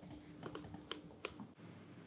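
A few faint, sharp clicks and taps, about four or five within the first second and a half, over a faint steady low hum.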